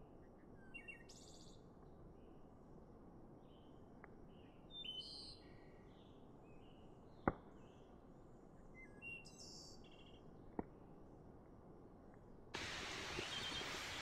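Faint forest birds chirping in short scattered calls, with a few sharp pops from a wood campfire, the loudest about seven seconds in. Near the end a steady outdoor hiss cuts in.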